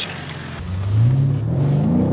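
BMW M5 F90's twin-turbo V8 accelerating under throttle, heard from inside the cabin: the engine note climbs steadily in pitch from about half a second in.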